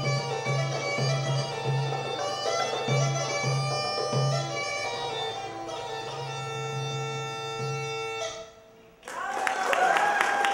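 Greek gaida bagpipe playing a melody over its drone, with a toumbeleki goblet drum, the tune ending abruptly about eight seconds in. After a brief silence, audience applause breaks out near the end.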